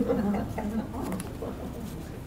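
Soft laughter trailing off over about the first second, then low room noise.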